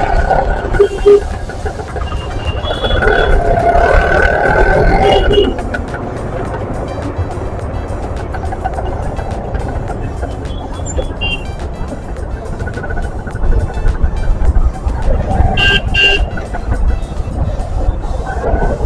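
Road traffic with vehicle horns honking in two spells, early on for a few seconds and again about three quarters of the way through, over a steady low road and wind rumble.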